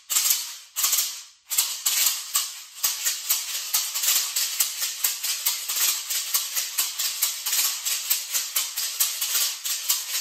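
A pair of handmade rawhide maracas with beads inside, shaken in an even beginner rhythm: one hand keeps the steady beat while the other adds doubles and triplets. It opens with a couple of separate shakes, then about a second and a half in settles into a fast, unbroken run of crisp, bright rattles.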